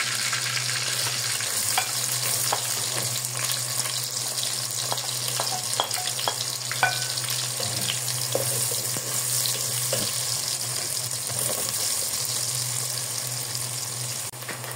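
Diced onions sizzling as they fry in hot oil in a pot, a steady hiss, with light scrapes and taps of a wooden spoon stirring them.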